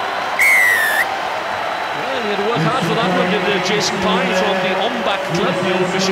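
Rugby referee's whistle: one shrill blast of about half a second, just after a try is scored, signalling the try. Stadium crowd noise and voices follow.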